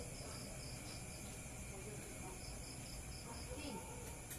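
Faint insect chirping, a cricket-like series of short, evenly spaced high pulses that comes in two runs, over a low steady background hum.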